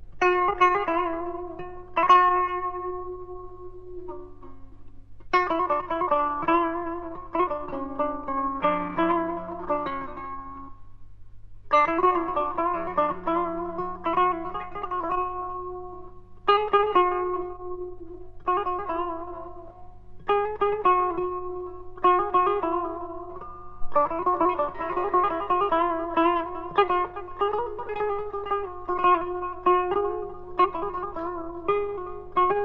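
Solo Persian classical instrumental music on a plucked string instrument, improvising in the mode of Bayat-e Esfahan. It is played in short phrases of ringing notes separated by brief pauses, over a steady low hum from the old recording.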